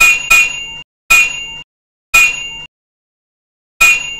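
Five short metallic dings, each ringing for about half a second and cut off abruptly: two close together at the start, then roughly one a second, the last just before the end.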